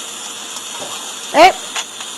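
Steady hiss of background noise, broken by one short spoken 'Eh?' about one and a half seconds in.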